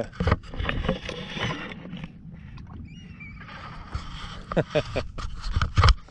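Water lapping and sloshing against a small fishing skiff's hull, then a run of sharp knocks on the deck, the loudest just before the end.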